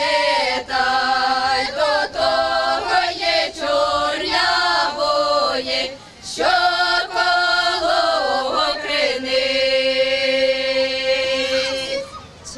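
A small Ukrainian folk ensemble, mostly women's voices, singing a hayivka spring song unaccompanied in open village style. The voices break briefly for breath about six seconds in, then the phrase ends on a long held chord over the last few seconds.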